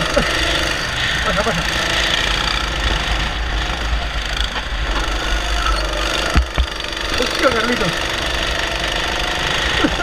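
Single-cylinder Honda 270cc four-stroke kart engine running steadily at racing speed, heard close up from the kart.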